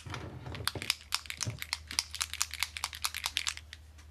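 Paint dropper bottle of Scale 75 Necro Gold being shaken hard: a fast, rattling run of clicks that stops shortly before the end.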